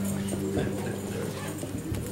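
A held low musical note lingers steadily as the worship song dies away, under faint voices in the room.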